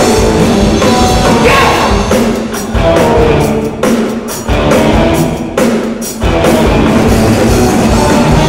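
Live funk rock band playing the opening of a song on drum kit, electric guitars and bass. The playing drops back briefly a few times, marked by sharp drum hits.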